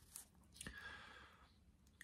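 Near silence: room tone, with one faint click and a little soft noise about half a second in.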